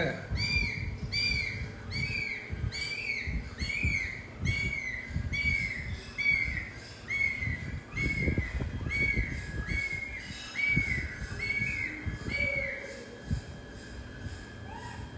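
A high, arched chirping call repeated very evenly, a little under two a second, stopping about a second before the end. Beneath it are soft, irregular low rustles and knocks.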